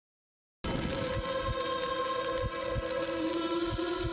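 Silence, then music cutting in sharply about half a second in: held, sustained tones with deep low hits every so often.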